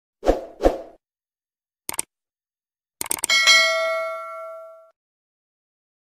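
Animation sound effects: two soft thumps, a quick double click about two seconds in, then a burst of clicks at three seconds that opens into a bell-like notification ding, ringing and fading over about a second and a half.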